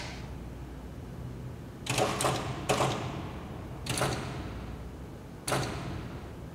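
Five sharp knocks, irregularly spaced, the first three close together, each with a short ringing tail.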